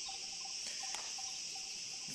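A steady, high-pitched chorus of insects chirring without a break.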